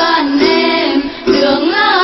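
Tày Then folk song: a high female voice singing a melismatic line over đàn tính long-necked lutes, with a brief breath pause a little past halfway.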